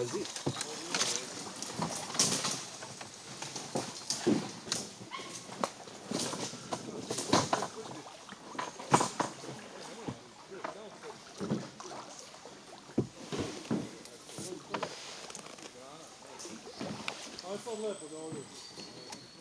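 Paddling a canoe: irregular splashes and drips from the paddle dipping into the water, a stroke every second or two.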